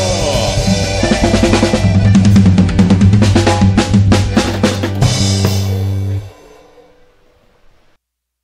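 A band with drum kit, guitars and keyboard playing the close of a song: a quick drum fill, then a final crash and a held chord that stop about six seconds in and die away into near silence.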